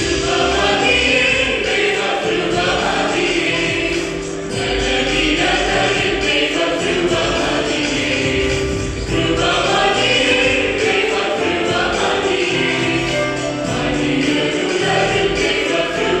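Mixed choir of men and women singing a Malayalam Christian convention song in harmony, accompanied by an electronic keyboard, with brief breaks between phrases.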